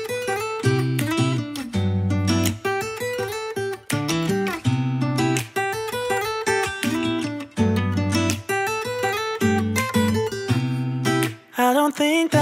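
Instrumental stretch of a song with no singing: acoustic guitar notes picked and strummed in a steady run over sustained low bass notes.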